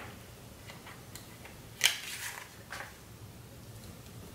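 Soft clicks and paper rustles of a sticker being lifted off its sheet with tweezers and pressed onto a planner page. A handful of light ticks, the sharpest a little under two seconds in.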